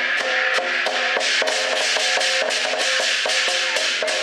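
Lion dance percussion band playing: drum strikes with clashing cymbals and a ringing gong in a quick, steady beat of about four strikes a second.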